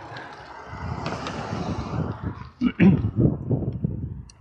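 A car driving past on the road, its noise swelling and fading over about two seconds, followed by a man's voice near the end.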